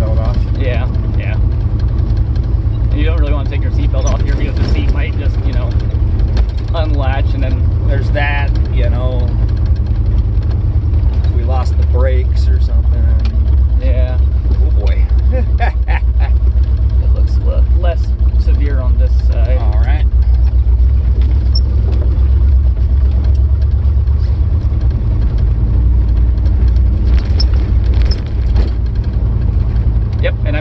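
Steady low rumble of a roofless Lincoln driving on a dusty dirt road: engine, road and wind noise in the open cabin. Indistinct voices come and go over it.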